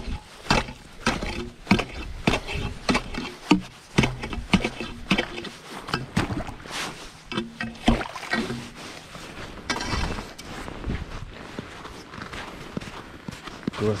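Steel ice chisel (spud bar) striking and chipping through thin lake ice, a rapid, irregular series of sharp chops, a few each second.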